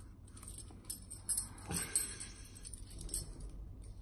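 A set of keys jingling and clinking lightly as they are handled, in a scatter of small metallic clicks that are busiest in the middle.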